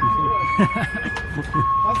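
Police car siren sounding a two-tone alternating wail, switching between a lower and a higher note about every three-quarters of a second.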